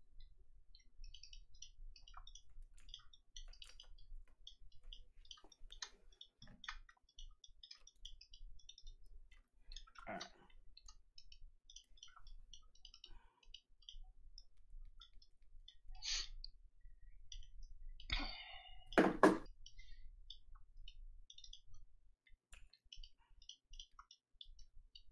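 Quiet, rapid clicking of a computer mouse and keys at a desk, with a few louder knocks, the loudest a pair near the end.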